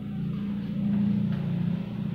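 A man's low, steady hum lasting about two seconds.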